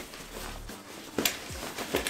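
Nylon backpack fabric rustling and scraping as a folded tool is slid up through the pass-through behind a side pouch, with a couple of light knocks about a second in.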